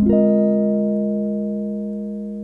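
Archtop jazz guitar's closing chord, its notes sounding in quick succession, then left to ring and slowly fade.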